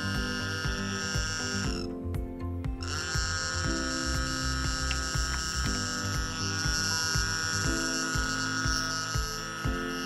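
Background music: sustained synth chords that change about every two seconds over a steady beat.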